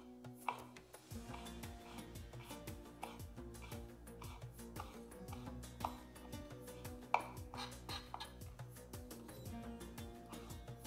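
Soft background music, with scattered sharp taps of a kitchen knife on a wooden cutting board as a preserved lemon is diced; three taps stand out, about half a second in, near six seconds and near seven seconds.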